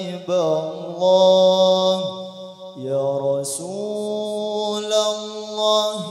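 Unaccompanied male voice singing an Arabic sholawat line into a microphone in long, ornamented held notes, over a steady lower held tone. The line falls into two long phrases with a short break about halfway.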